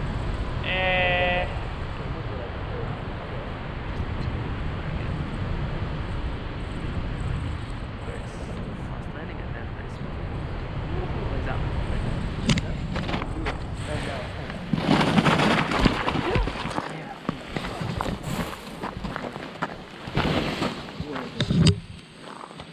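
Wind rushing over the microphone of a tandem paraglider flying low along a slope, with a short voiced call about a second in. In the last seven seconds come several louder, irregular rushing surges and a few knocks as the glider touches down on the snowy slope.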